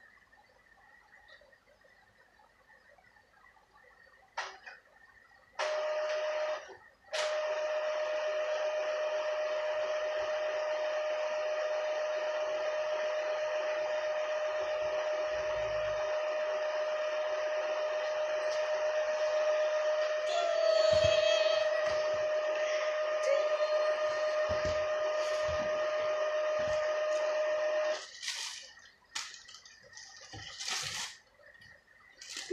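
A machine running with a steady whir and one steady tone. It starts about six seconds in, stops for a moment, then runs on until it cuts off suddenly near the end.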